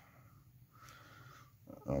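A faint short sniff lasting under a second, followed near the end by the start of a spoken word.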